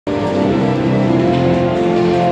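Loud music with long held notes and chords that change in steps.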